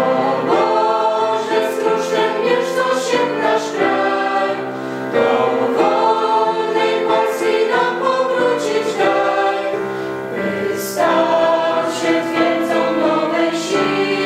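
Mixed choir of young male and female voices singing a slow hymn in several-part harmony, holding long chords that change every second or two.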